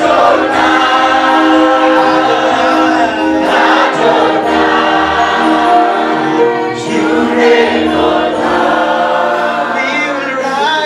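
A gospel worship team of male and female singers singing together through microphones, several voices at once with long held notes.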